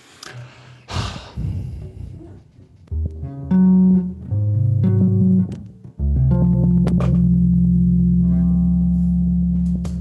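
Electric bass guitar: a knock and some string noise in the first two seconds, then a few low notes, changing about every half second, and one long held low note from about six seconds in.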